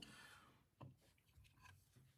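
Near silence: room tone, with one faint click a little under a second in.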